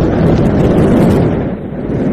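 Rocket launch roar: a loud, steady rumble of engine noise that sags slightly near the end.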